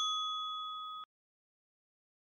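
The fading ring of a bell-like chime from a channel logo sting, a few clear high tones dying away and then cut off abruptly about a second in, followed by silence.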